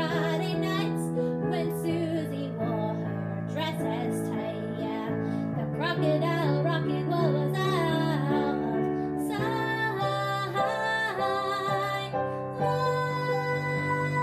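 A young woman singing a pop-rock song over live piano accompaniment, the piano holding sustained chords under her melody.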